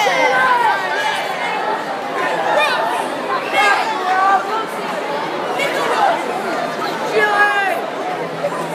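Audience chatter: many people talking at once in a large hall, with no music playing.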